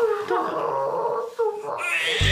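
Newborn baby crying: two high-pitched, wavering wails, the second one short after a brief break.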